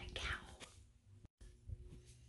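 A woman saying one word softly, then faint room noise broken by a brief moment of dead silence at an edit cut.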